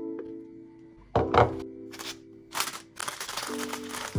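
Lo-fi background music with sustained chords. About a second in there is a loud thunk of something set down on the kitchen worktop. Near the end comes a stretch of crinkling and rustling as a cracker box and its wrapper are opened.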